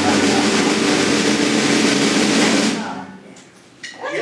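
Live church band playing, drums and cymbals over held chords, then stopping and dying away a little under three seconds in.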